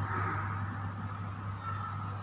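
A pause between recited Quran verses: room noise with a steady low electrical hum from the microphone and sound system.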